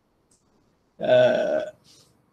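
A man's voice: one short drawn-out vowel sound about a second in, after a second of near silence.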